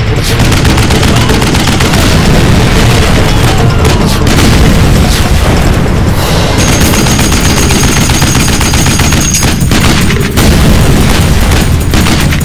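Film sound effects of explosion booms and rapid machine-gun fire, loud and nearly continuous. A thin high steady tone rings for a few seconds after the middle.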